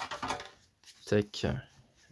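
A thick stack of Yu-Gi-Oh trading cards handled and fanned through the hands, giving papery rustling and sliding, with a brief murmured syllable about a second in.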